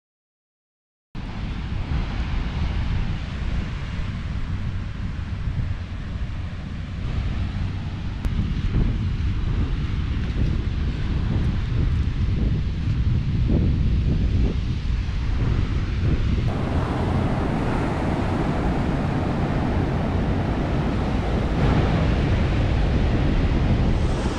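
Wind buffeting the microphone over the wash of ocean surf on a beach, starting about a second in after silence. The sound thickens about two-thirds of the way through.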